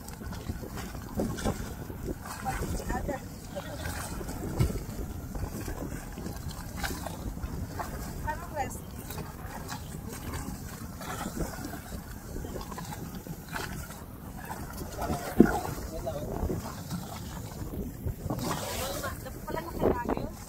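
Wind buffeting the microphone over choppy sea water from an open boat, with scattered indistinct voices and a sharp knock about fifteen seconds in.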